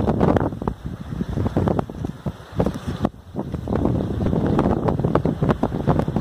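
Wind gusting against the microphone, a low rumbling rush that swells and fades, dipping briefly about three seconds in.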